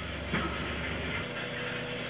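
Steady hiss and low rumble of a gas stove burner heating a pot of sugar water; the rumble drops away a little past halfway and a faint steady hum sets in.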